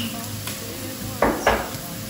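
Chopped onion frying in oil, sizzling steadily in a nonstick pan, while garlic paste is stirred in. Two sharp knocks of the spoon against the pan come about a quarter second apart, just over a second in.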